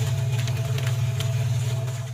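A machine running with a steady low drone, a few steady higher tones over it and faint regular ticking.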